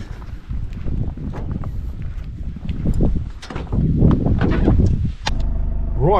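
Rustling and rumbling movement as someone walks to a Toyota HiAce van and climbs into the driver's seat, then the door shuts with a sharp clunk a little after five seconds in. After the clunk a steady low hum of the van inside the cab is heard.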